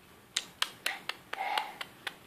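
A baby sucking on his thumb and fingers, making a quick run of sharp wet mouth clicks, about four a second, with a brief squeak partway through.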